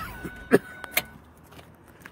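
A man's short cough about half a second in, then a light click a moment later, over a quiet car interior.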